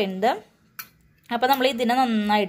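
A woman's voice speaking, broken by a pause of under a second in the middle.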